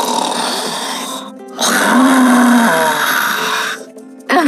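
Children's voices growling in imitation of a tiger, two rough roars, the second starting about one and a half seconds in, over background music.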